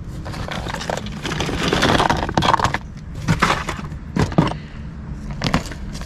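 Hands rummaging through a cardboard box of small loose items such as stones and jewelry: scattered clicks and knocks, with a stretch of rustling about two seconds in.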